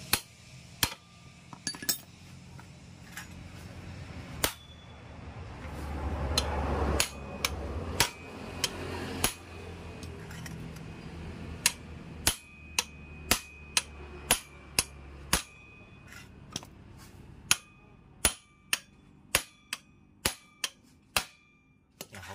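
Sharp metal-on-metal clinks of a hammer striking a special flat wrench to tighten the nut on a Honda Vario's CVT rear pulley and clutch assembly. There are dozens of blows, spaced irregularly at first and then about one or two a second in the second half. A low rumble swells in the background around the middle.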